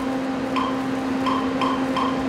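Studio room tone: a steady low hum with about six short, faint higher beeps at uneven intervals.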